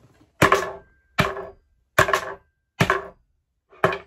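Five sharp knocks on a tabletop, about one every 0.8 seconds, the last a little smaller: a hand striking the table in a stand test, to see whether a standing action figure stays up under the jolts.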